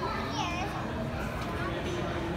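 Visitors' voices and children's chatter at a crowded aquarium tank, with a child's high-pitched exclamation about half a second in, over a steady background din.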